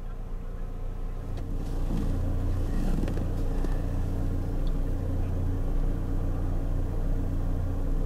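Car driving, heard from inside the cabin: a steady low engine and road rumble that grows a little louder about two seconds in.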